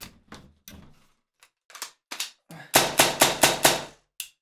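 Air-powered Tippmann M4 airsoft rifle test-firing a quick string of about seven shots in roughly a second near the end, after a few light clicks of handling. It is being checked with a newly installed high rate-of-fire kit, before the rate of fire has been tuned.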